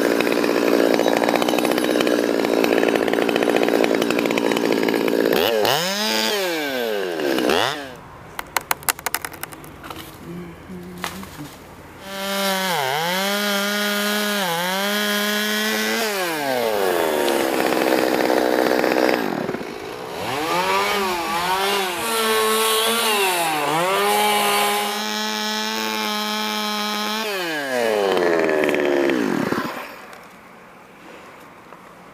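Small two-stroke chainsaw cutting through maple wood at full throttle, its pitch sagging under load in the cut and dropping back toward idle several times between cuts. About a third of the way in there is a quieter spell with a quick run of sharp clicks, and the engine falls off right at the end.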